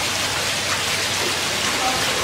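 Steady, even splashing hiss of running water at a koi pond.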